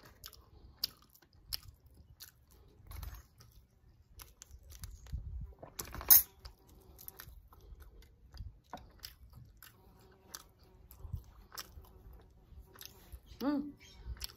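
A person chewing a mouthful of boiled half-developed egg close to the microphone, with many small wet mouth clicks and one sharp, louder click about six seconds in. A short voiced "mm" comes near the end.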